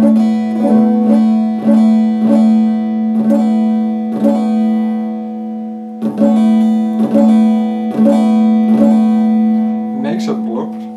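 Electric guitar picked one note at a time, about two picks a second, each note ringing on under the next; the picking stops for about a second midway, then resumes.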